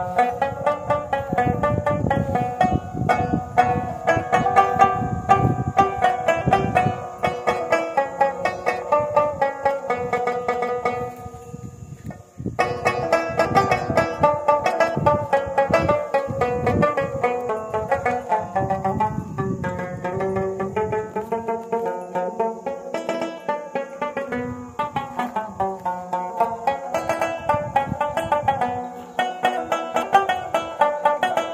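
Solo rubab playing: a quick melody of plucked notes, with a short pause about twelve seconds in before the playing picks up again.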